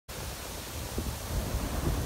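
Ocean surf washing up onto a beach, a steady rushing noise that grows louder toward the end, with wind rumbling on the microphone.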